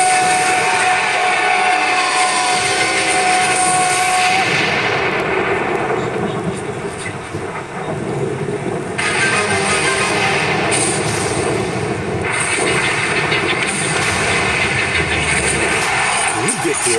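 TV commercial soundtrack: music under a dense wash of noise, with a steady held tone for the first four seconds or so. The treble fades out about five seconds in and comes back suddenly near nine seconds.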